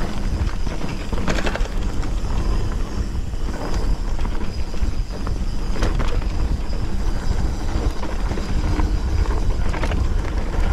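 A Vitus Sentier hardtail mountain bike rolling fast along a dirt woodland trail, heard through a GoPro microphone: steady wind rumble on the microphone over tyre noise, with rattling knocks from the bike over bumps about one and a half and six seconds in.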